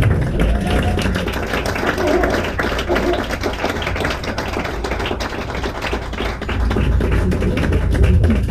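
Electric guitar played solo with fast percussive strumming and string-slapping: a dense, rapid run of clicking strokes over a steady low bass.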